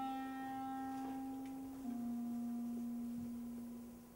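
A clarinet playing softly, holding a long low note, then stepping down to a slightly lower note about two seconds in and fading away near the end.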